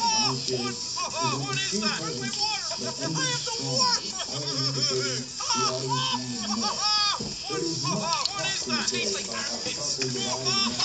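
A man's voice sung into a melody with sliding, arching pitch over a backing beat, in a musical remix of his cries and exclamations.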